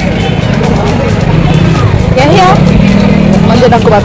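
Busy street bustle: a steady low hum like traffic, with snatches of voices and music in the background.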